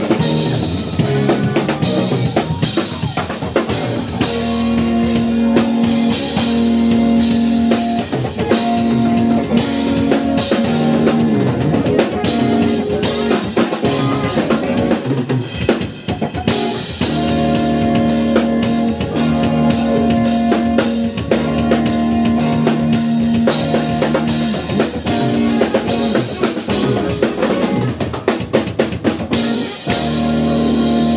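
Fast, dense drum-kit solo on snare, toms, kick drum and cymbals, with a 14-inch stainless steel snare drum in the kit, picked up by a camera's built-in microphone. A steady low held tone sounds beneath the drumming for stretches of several seconds.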